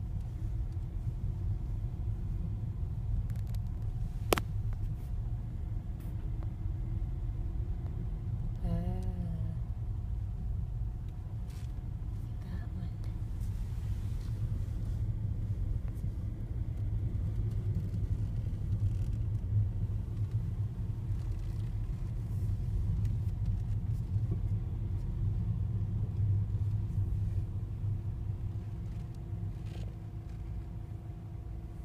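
Low, steady rumble of a car driving slowly, heard from inside the cabin, with a single sharp click about four seconds in.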